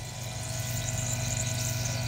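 Small 115 V AC high-pressure water pump (100 psi, 110 GPH) running with a steady low hum; not much sound to it.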